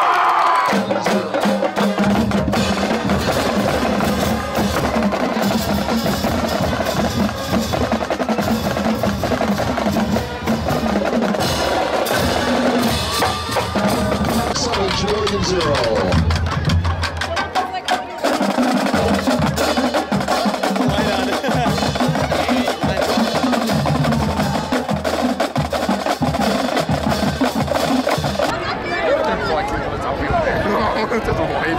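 Drum-led percussion: rapid snare-drum strokes and rolls with sharp clicking hits over a steady low note.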